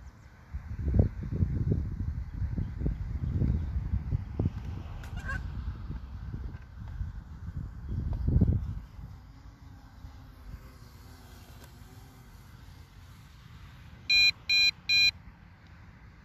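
Wind buffeting the microphone in gusts for the first nine seconds, then a quieter stretch. Near the end come three short electronic beeps, from the drone's controller or phone app.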